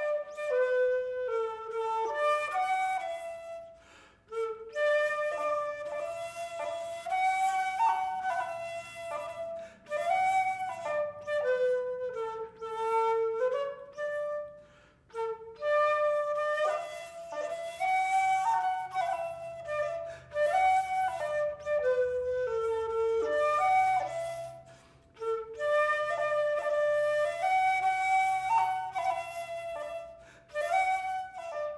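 Wooden terz flute in F by the American maker Peloubet playing a quick-moving solo melody, in phrases of about ten seconds with short breaths between them.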